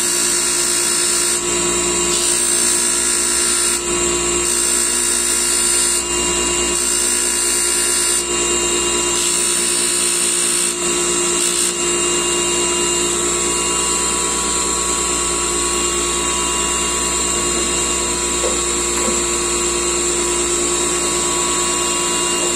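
Electric motor driving a polishing wheel, running steadily with a constant whine. For roughly the first half, a high hiss comes and goes every second or so as a small metal revolver part is held to the wheel and lifted off; after that the motor runs on evenly.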